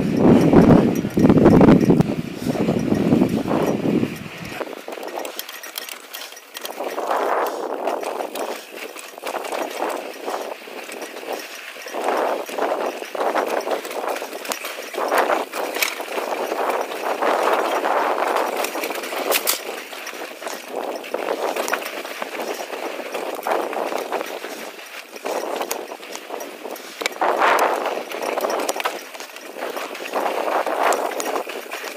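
Mountain bike riding fast down a dirt and rock trail: the tyres crunch and roll over sand and stones, and the bike rattles and clatters over the rocks in uneven surges. A deep rumble on the microphone fills the first four seconds or so, then cuts off suddenly.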